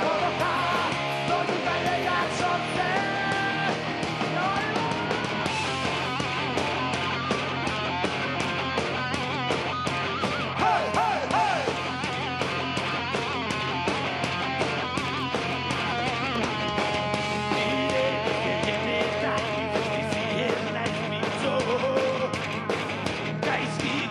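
Heavy metal band playing: electric guitars over bass and steady drums, with a lead line that bends and wavers in pitch.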